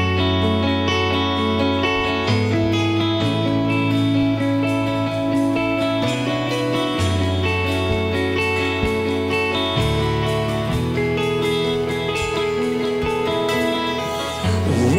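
Live worship band playing an instrumental song introduction: picked acoustic guitar over deep bass notes that change every two to three seconds, with no singing yet.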